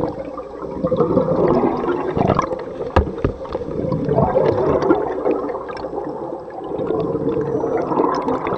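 Scuba regulator exhaust heard underwater: the diver's exhaled bubbles gurgling in swells about every three seconds, with a sharp click about three seconds in.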